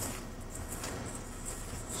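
Soft, steady rustling of breadcrumbs being stirred together with melted butter and paprika in a bowl.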